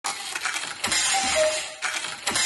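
Start of a podcast intro jingle: a dense, noisy sound effect with a few sharp clicks and two short high notes.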